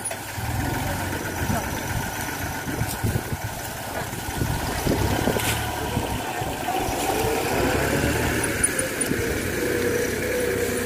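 Yanmar YM2610 compact tractor's diesel engine running steadily, with a wavering whine in the second half.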